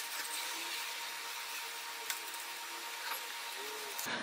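Faint, steady hiss with a faint steady tone under it, and one small tick about two seconds in.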